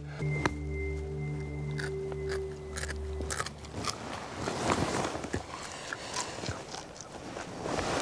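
A man biting and chewing a raw scorpion, with irregular crisp crunches and wet clicks of the shell between his teeth. A held background-music chord sounds under it for the first three seconds or so.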